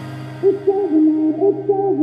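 Electronic dance track in a sparse passage: a steady low synth note holds under a soft, pure-toned melody of short sliding notes that comes in about half a second in.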